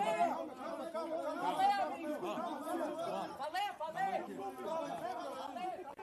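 Several men's voices talking and shouting over one another in a chaotic scuffle, with no single clear voice standing out.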